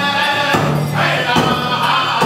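Music for a circle dance: a group of voices singing together over a steady beat, about one beat a second.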